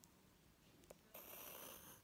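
Graphite pencil drawing a line on paper: a faint scratchy stroke starting about a second in and lasting just under a second.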